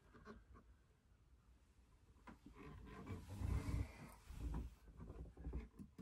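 Faint handling noise as an electric octave mandolin is moved in the hands: near silence at first, then soft rustling with a few light knocks and dull thumps from about two seconds in.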